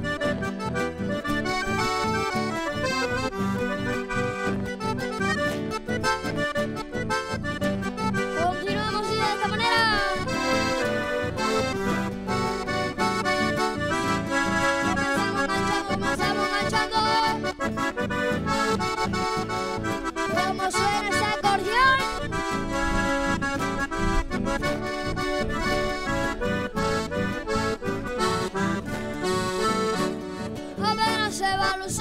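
Instrumental chamamé played on a button accordion with acoustic guitar accompaniment, a continuous melody over a steady beat.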